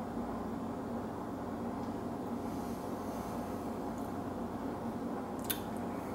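Steady low room hum, with a single sharp click near the end as a stemmed glass is set down on a metal coaster.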